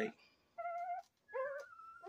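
Newborn Rottweiler puppies, about two weeks old, whimpering: two short, thin, high whines, the second rising in pitch.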